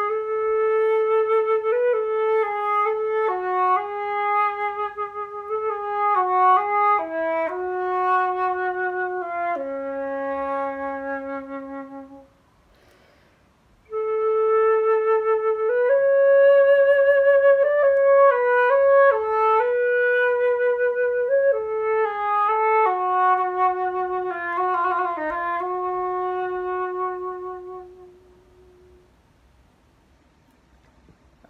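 Solo flute playing a slow, gentle melody in its bottom octave, the instrument's lowest register. It plays in two long phrases with a short breath pause about twelve seconds in, and the second phrase ends shortly before the end.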